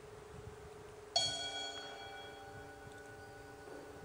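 A small metal bell struck once, about a second in, ringing out with several clear tones and fading over about two seconds, over a faint steady hum.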